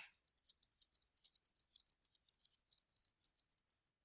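Faint, irregular clicking of computer keyboard keys being typed, several keystrokes a second.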